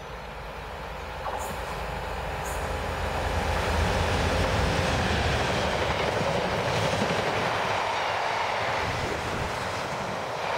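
A Freightliner Class 66 diesel locomotive (two-stroke V12) draws near and passes, its deep engine rumble growing over the first few seconds. The rumble then gives way to the steady rolling noise of container wagons going by, with a couple of brief high squeaks early on.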